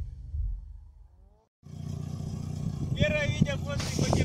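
A low rumble fades out to a moment of silence about a second and a half in. Then comes a steady low hum of a classic Lada saloon's engine idling, with people talking over it from about three seconds.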